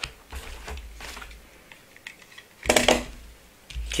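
Light clicks and knocks of a cardboard box and small hand tools being handled on a tabletop, with a louder knock about three seconds in.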